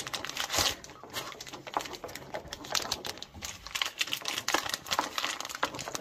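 Plastic bag of shredded mozzarella crinkling as it is handled, with irregular crackles.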